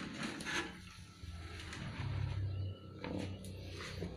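Soft rustling of dry cocopeat poured from a plastic bucket, with a low rumble for a second or so in the middle.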